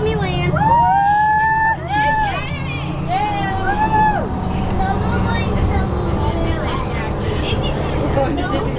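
Shuttle bus engine rumbling steadily inside the cabin under young girls' voices. For the first few seconds a high voice holds long, arching notes, then quieter chatter carries on over the rumble.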